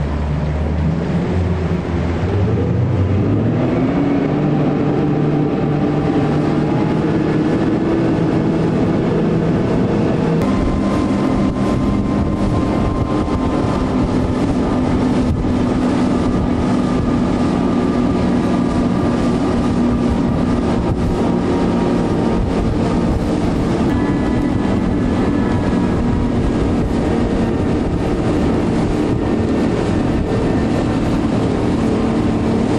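Outboard motors of a motorboat running at speed over rushing wind and water. The engine note rises over the first few seconds, shifts about ten seconds in, then holds steady.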